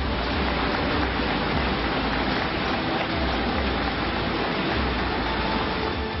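A large seated audience applauding, a dense, even clapping that holds steady throughout.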